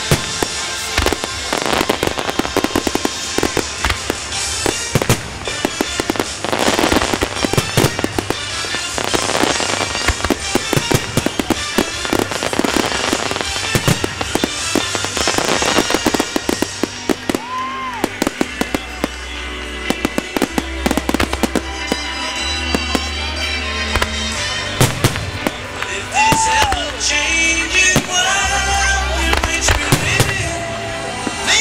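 Aerial firework shells bursting in a dense, rapid barrage of booms over a music soundtrack. The bursts thin out after about 17 seconds, leaving the music's bass notes with scattered reports.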